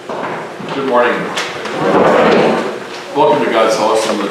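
A man speaking in short phrases, with a brief rustling noise between them about two seconds in.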